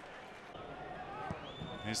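Faint football stadium ambience from a sparse crowd and the pitch, with a faint high steady tone near the end.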